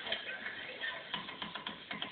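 A pit bull–dalmatian mix shaking its head, the metal hardware on its collar and studded harness rattling in a quick run of clicks, mostly in the second half.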